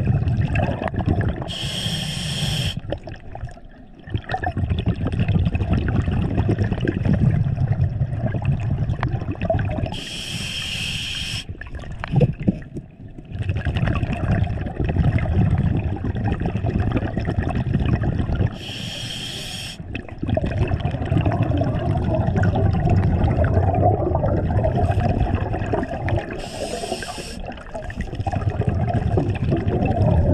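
Scuba diver breathing through a regulator underwater: a short hissing inhalation about every eight seconds, four times in all, each followed by a long rumble of exhaled bubbles.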